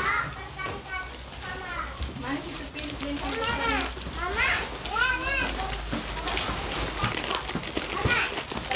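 Young children's high-pitched voices chattering and calling in the background, with the rustle of plastic gift wrapping being handled.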